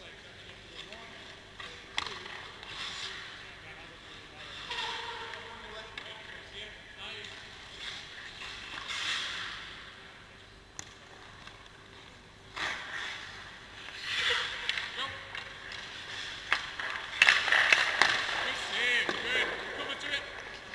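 Ice skate blades scraping and carving on rink ice in several separate swells, loudest in the second half, with a few sharp knocks on the ice. Distant voices are heard under it.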